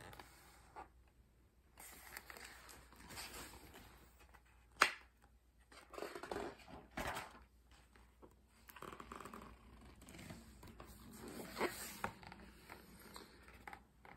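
Quiet rustling and scraping of paper as a large picture book is handled and its page turned, with one sharp click about five seconds in that is the loudest sound.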